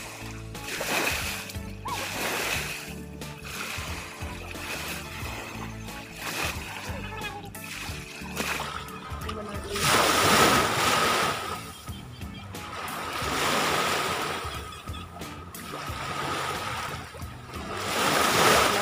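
Small waves washing in over a sandy shore in repeated swells, the loudest about ten seconds in, with background music playing throughout.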